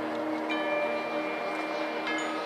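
Marching band in a soft, sustained passage. Front-ensemble chimes and mallet percussion ring over a held chord, and a new high bell-like note is struck about half a second in and rings on.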